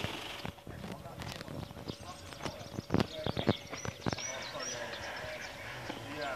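Several sharp, irregular clicks and knocks, the loudest two close together about three seconds in, with small birds chirping from about two seconds on.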